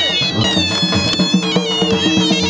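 Loud folk music: high reed pipes playing a sliding, bending melody over a steady drone, with a drum beating a regular rhythm.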